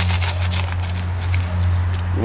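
Lumps of charcoal crunching and clicking as they are pressed and shifted by hand in a plastic bucket, a run of small irregular clicks, over a steady low hum.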